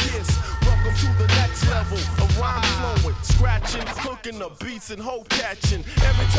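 Hip hop record playing in a DJ mix: a heavy bass beat with vocals over it. The bass and beat drop out for a little under two seconds near the end, then come back in.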